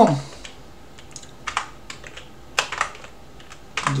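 Computer keyboard being typed on slowly: a handful of separate key clicks at uneven intervals.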